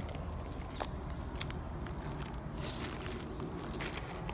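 Footsteps on lava-rock gravel: a few scattered clicks and scuffs over a steady low rumble.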